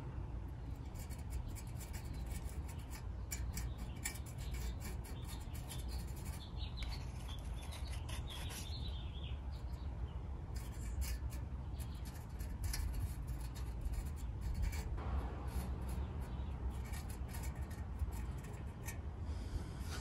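A fingertip rubbing and smoothing JB Weld epoxy along the welded edge of a transmission pan: soft, scratchy rubbing strokes coming on and off, over a low steady hum.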